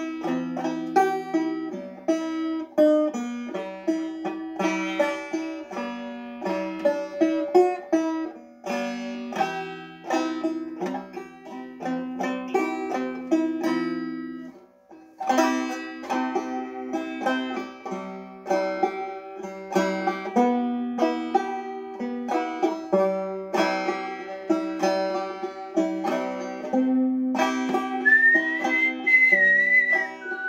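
Solo banjo picked in a fast, continuous run of notes, breaking off briefly about halfway before starting again. Near the end a whistled melody comes in over the picking.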